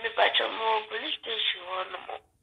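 A person speaking in a thin, narrow-sounding voice, like speech heard over a phone.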